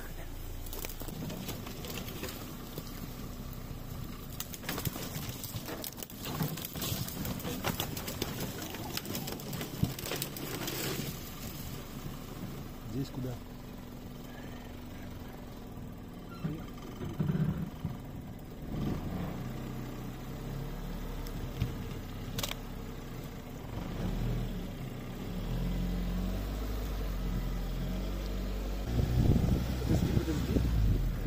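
Engine of an all-terrain vehicle on large low-pressure tyres running as it crawls over rough ground, its pitch rising and falling with the throttle, with scattered knocks and scrapes from the bumps and brush.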